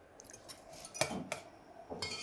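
A metal spoon clinking against a saucepan of gravy as a taste is scooped out: several light clinks, the loudest about a second in.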